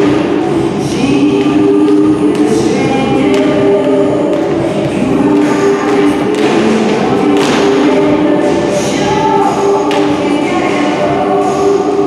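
Choral music with long held sung notes, and a few sharp knocks spaced several seconds apart.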